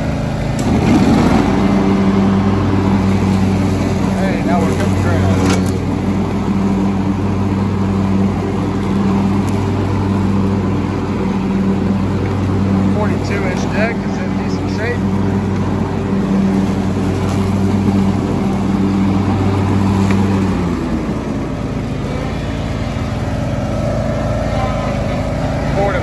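John Deere X300 lawn tractor's Kawasaki engine running steadily under load as the tractor drives on its pedal-controlled drive; the sound eases and drops lower near the end as the tractor slows. A single knock sounds about five seconds in.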